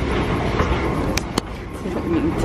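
Escalator running: a steady mechanical rumble, with two sharp clicks close together just past the middle.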